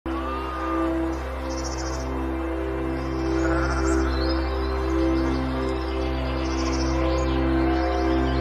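Soft ambient music: sustained chords shifting about every second and a half over a steady low drone, with birds chirping high above it.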